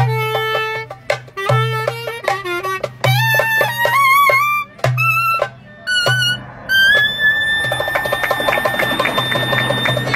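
Clarinet playing an ornamented Turkish folk melody in short phrases with wide vibrato and pitch bends, over a low hum that swells with each phrase. About seven seconds in it settles on one long held high note while fast clapping-like clicks set in.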